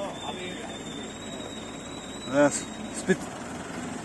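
Truck-mounted aerial lift running as its boom swings: a steady low machine hum with a faint, thin, steady high whine from the hydraulic drive, and a small click near the end.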